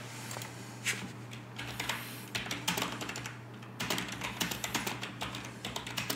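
Computer keyboard typing: a run of irregular, quick key clicks starting about a second in, over a steady low electrical hum.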